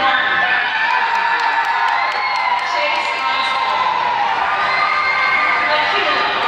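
Graduation audience cheering and whooping, with many voices and a few long rising-and-falling shouts over the crowd.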